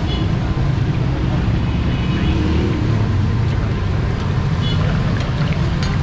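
Steady low rumble of busy street noise, with faint voices in the background.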